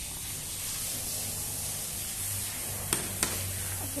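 Steady hiss with a low hum underneath, and two sharp clicks about a third of a second apart near the end.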